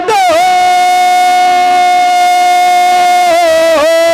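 A man singing a naat, holding one long high note on the last word "do" of the line. The note stays steady for about three seconds, then wavers down in pitch twice near the end.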